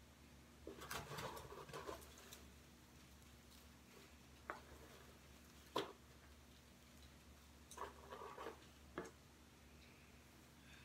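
Faint rustling and handling noises from hands rummaging through a cardboard box, in two short clusters about a second in and near the end, with a few single light taps between.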